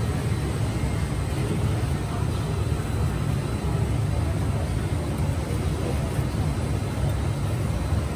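A steady low mechanical rumble, unchanging throughout, with a faint hiss above it.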